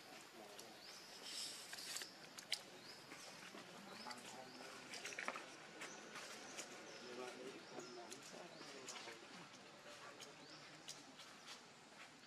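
Faint distant voices of people talking, with short, high rising chirps repeating every second or so and a few sharp clicks, one louder about two and a half seconds in.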